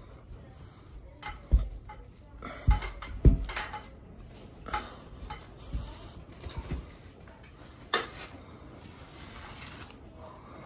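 Broken sheetrock being snapped and pulled out of a ceiling by hand along knife-scored lines: an irregular series of cracks and knocks, some with dull thumps, the loudest about three seconds in.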